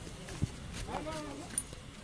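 People talking, with a dull knock about half a second in.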